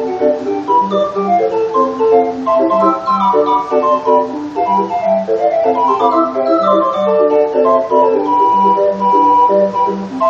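A hand-cranked 20-note street organ playing a tune from its music roll: a pipe melody over chords, with bass notes coming in pairs, going on without a break.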